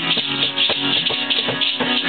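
Steel-string acoustic guitar strummed in a steady rhythm, with a tambourine jingling along.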